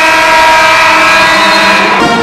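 Basketball gym horn sounding: a loud, steady horn tone that starts abruptly and is held for nearly two seconds, the end-of-game signal.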